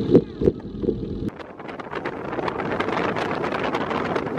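A passenger ferry's low engine rumble, with churning wake water and a few voices. About a second in, it cuts abruptly to wind buffeting the microphone over choppy water.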